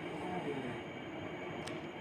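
Steady low background hum, without any distinct event.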